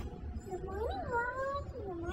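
A young woman's voice drawn out in a high sing-song tone with no clear words, sliding up to a peak about a second in, then holding and falling.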